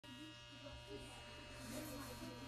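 Faint, steady electrical hum and buzz from a stationary Nagano Electric Railway 8500 series train car with its doors open, with a faint voice in the background.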